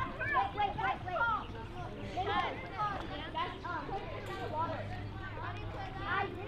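Indistinct voices of several people talking and calling out around a swimming pool, with no single clear speaker. A steady low hum sits underneath and grows stronger about two-thirds of the way through.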